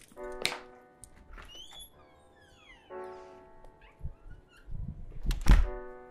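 A front door is shut with a heavy low thud near the end, the loudest sound here. It plays over slow piano music, with a chord struck about every two to three seconds.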